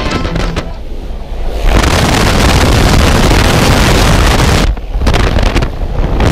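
Dubbed rock music at first, then, from about two seconds in, a loud steady rush of wind on the camera microphone as the tandem pair drops away from the aircraft into freefall, briefly dipping twice near the end.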